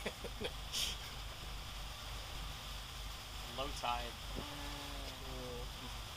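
A motor cruiser's engine running, a steady low rumble under a light even hiss, with a drawn-out spoken word a little before the middle.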